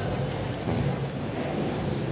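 Steady background noise of a large, busy hall: an even rumbling hiss with a low hum beneath it.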